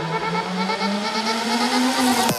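Electro house music in a build-up, with the kick drum out: a low synth tone glides slowly upward in pitch under sustained higher synth notes.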